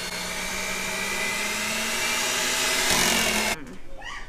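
Hamilton Beach electric hand mixer running steadily, its beaters churning thick, warm cheese curds, then switched off about three and a half seconds in.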